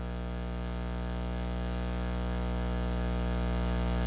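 Steady electrical mains hum, a buzzing stack of steady tones that slowly grows louder.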